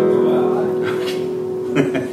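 A single guitar chord left to ring, its notes sustaining and slowly fading away.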